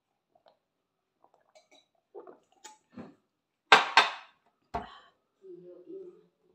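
A small drinking glass handled and set down on a glass tabletop: a few faint clicks, then two sharp, louder sounds just before four seconds in, and a knock with a low thud soon after.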